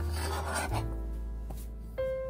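Cut sausage pieces being scraped together across a plastic cutting board, one short scrape lasting well under a second near the start, over background music.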